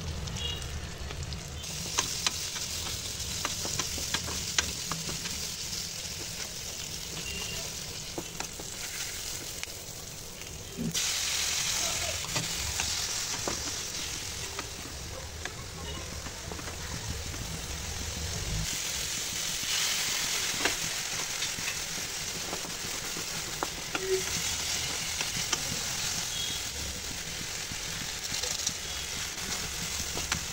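Onions sizzling in hot oil in a wok, with a wooden spatula scraping and tapping the pan now and then. About eleven seconds in the sizzle suddenly gets louder as chopped tomatoes and green chillies go into the oil.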